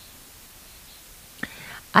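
A pause in speech with a low, steady background hiss; about one and a half seconds in, a short click and a faint breathy sound, like an intake of breath, come just before the woman's speech starts again at the very end.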